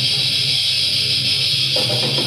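A heavy metal band playing live at high volume, distorted electric guitar riffing to the fore; the guitar part changes near the end.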